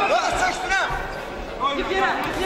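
Voices calling out in a large echoing hall during an MMA bout in the ring, with a couple of dull thuds from the fighters' movement on the mat.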